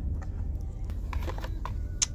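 Low steady rumble inside a car, with a few faint clicks and rustles as a plastic serum bottle and its cardboard box are handled, and a sharper click at the very end.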